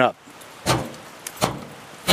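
Jammed metal mine-tunnel door being forced open, giving two dull knocks about three-quarters of a second apart. A slip of rock has wedged the entrance so the door barely opens.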